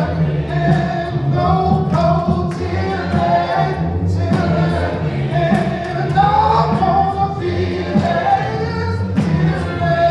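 Gospel music: several voices singing together over sustained low instrumental notes, with occasional sharp percussive hits.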